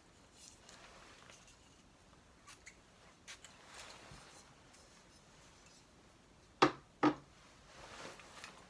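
Perfume atomizer spraying twice in quick succession near the end: two short, loud hisses about half a second apart. Before them there are faint small clicks and rustles.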